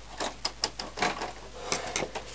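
Plastic side cover of an Epson R265 printer being handled and prised with a knife blade: a series of sharp plastic clicks and knocks as its clips are worked, the loudest about a second in and near the end.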